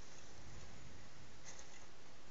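Steady background hiss of room tone with no distinct sound event, only a faint tick about one and a half seconds in.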